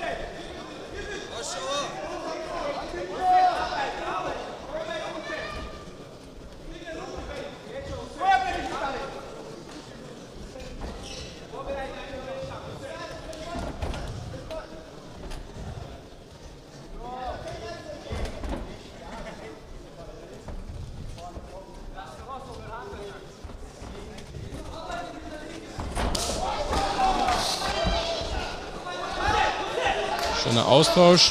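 Sports-hall sound of an amateur MMA bout in a ring: shouting voices from the crowd and corners, with dull thuds of bare feet and blows on the ring canvas. The voices grow louder near the end as the fighters go into a clinch against the ropes.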